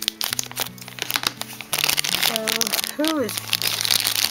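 A shiny plastic wrapper crinkling as it is handled and cut open with scissors, the crackling growing denser and louder about halfway through, over background music.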